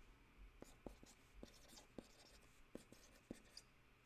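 Faint, irregular taps and scratches of a pen writing on a hand-held pad, about a dozen short clicks spread unevenly through the quiet.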